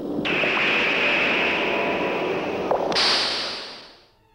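Sound effect from a film clip: a loud rushing hiss that starts suddenly, jumps higher in pitch about three seconds in, then fades away.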